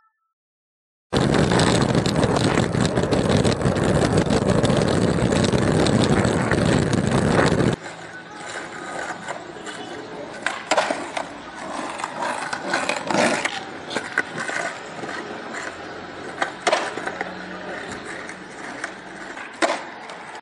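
Skateboard wheels rolling over rough concrete, with occasional sharp clacks of the board. For the first several seconds a much louder, close rushing rumble covers it, then cuts off abruptly about eight seconds in.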